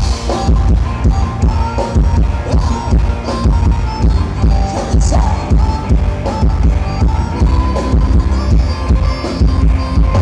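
Thai ramwong dance music from a live band, played loud: a steady drum and bass beat about two beats a second under a held melody line.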